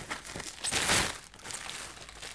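White plastic protective bag crinkling and rustling as a guitar is pulled up and out of it, loudest about midway through.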